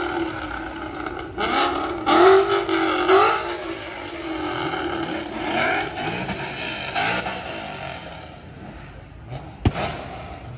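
Car engines revving and accelerating past, with the pitch rising and falling over several loud pulls in the first few seconds, then easing into quieter traffic noise. A single sharp crack sounds near the end.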